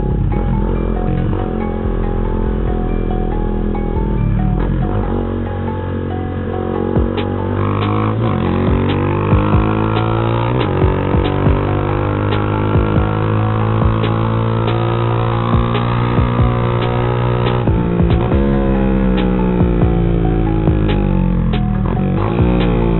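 Motorcycle engine running under way. Its pitch climbs about six seconds in and holds, then drops and climbs again near the end as the bike accelerates, with music playing along underneath.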